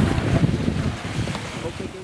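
Wind buffeting the microphone aboard a sailboat under way, a low rumbling rush that slowly fades away.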